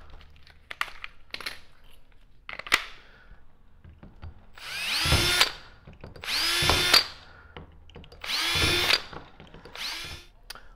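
Cordless drill run in three short bursts about a second apart, each rising in pitch as the motor spins up, boring and driving screws into a plastic kayak track mount. A few light clicks and taps come before the first burst.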